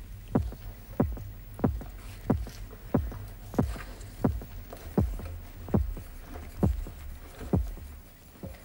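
Heartbeat sound effect: a steady run of about eleven low thumps, roughly three every two seconds, spacing out slightly near the end, over a low steady hum.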